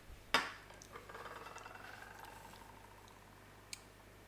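Mouth sounds of a man tasting a runny, vinegary sauce. A sharp smack about a third of a second in, then a faint drawn-out squeaky sound that slowly falls in pitch, and a short click near the end.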